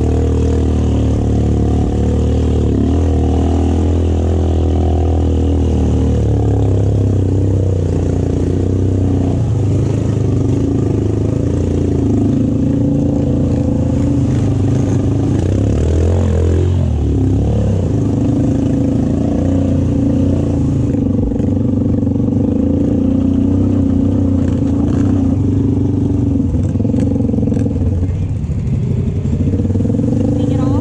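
Snorkeled ATV engine running under load as it wades through deep muddy water, its revs rising and falling around the middle, with water sloshing and splashing around the machine.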